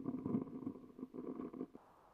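A man coughing and clearing his throat, a rough, rumbling sound that fades out about two-thirds of the way through.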